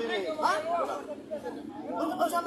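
Speech only: men talking.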